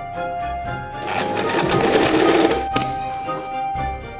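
Light-duty domestic electric sewing machine running for about a second and a half, stitching a strip of fabric, then stopping with a sharp click. Background music plays throughout.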